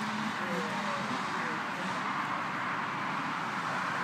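A two-stroke dirt bike's engine running at a distance, heard as a steady buzz with slight rises and falls in pitch.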